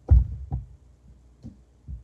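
Dull low thumps of hands pressing and patting soft modeling clay down against a tabletop. Two strong ones come in the first half second and two fainter ones near the end.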